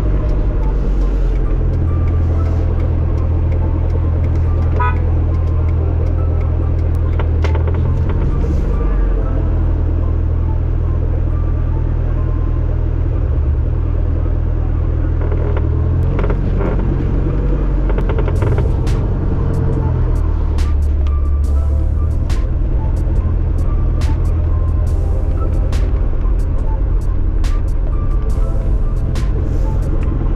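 Steady low rumble of a car driving through town traffic, heard from inside the vehicle, with music playing over it.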